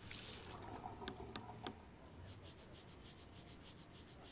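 Tap water running briefly over a toothbrush, then three light clicks, then the faint, quick, even scrubbing of a toothbrush on teeth, about six strokes a second.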